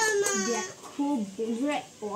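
A toddler crying and whining: a long high-pitched wail at the start, then breaking into short whimpering cries.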